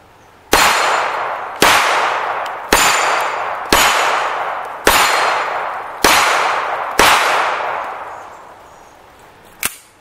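Seven shots from a Colt Competition 1911 pistol in 9mm, fired about one a second, each with a long fading echo. A short sharp click follows near the end.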